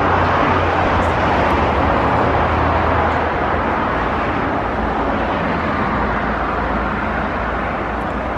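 Steady rushing of a shallow river running over riffles and stones below a footbridge.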